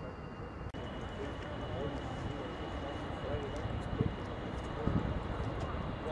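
Indistinct distant voices over steady open-air background noise, with a faint steady high-pitched whine throughout.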